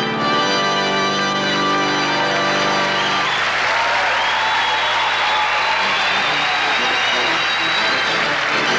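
Rodgers touring organ playing held chords. About three and a half seconds in, the low notes stop and an audience applauds, with a few high tones still sounding over the clapping.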